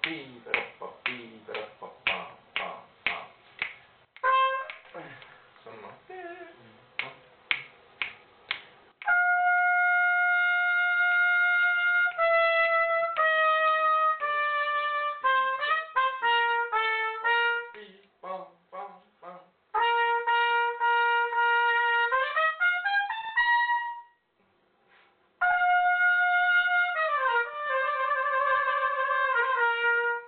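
Trumpet playing a lesson passage: first a string of short, separately tongued notes, then long held notes stepping down, a quick run, and a scale rising to a high note. After a brief pause, a long note falls to a lower one that wavers rapidly near the end, like a trill.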